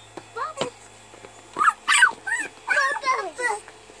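Young children squealing and chattering excitedly in high, wordless bursts, several short calls in quick succession.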